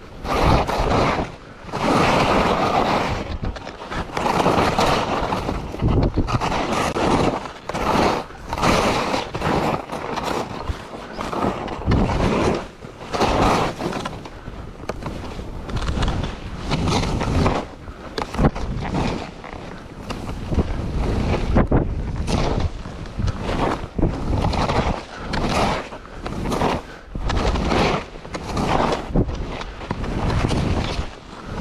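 Skis turning through fresh powder snow, a rushing hiss that swells and drops with each turn every second or two, mixed with wind noise on the microphone.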